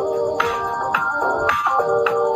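Electronic background music: sustained synthesizer-like notes over short percussion hits about every half second.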